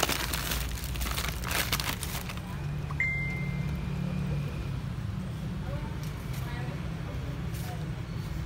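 Cat and kittens eating from a metal plate: quick wet smacking and clicking of chewing and licking, densest in the first two seconds, over a steady low hum. About three seconds in a short high tone sounds suddenly, lasting a second or so.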